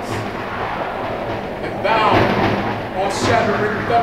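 A man's voice declaiming stage lines, loudest about two seconds in, with a steady low hum underneath.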